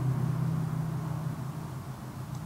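A steady low hum of room noise with no other events, fading slightly toward the end.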